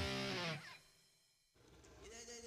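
Background music with guitar: a held chord rings for about half a second, then fades away, and a new quiet passage begins near the end.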